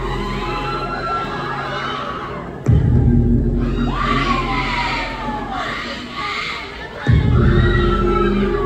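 Loud dance track with a deep bass hit that sustains, twice (about a third of the way in and near the end), under an audience shouting and screaming with high, gliding voices.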